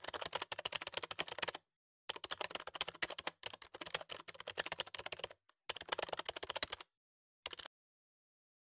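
Rapid keyboard-typing clicks, a sound effect matching the on-screen text as it types out letter by letter. The clicks come in four runs with short pauses between them, the last run brief, near the end.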